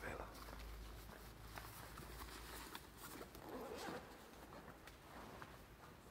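Quiet church interior with faint murmured voices and a few small clicks and rustles, as of a backpack being handled and unzipped.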